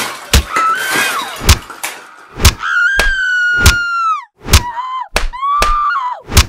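A series of loud, irregular thuds or knocks, about ten in six seconds, with a high-pitched voice between them: one long held note that drops off at its end, and shorter rising and falling cries.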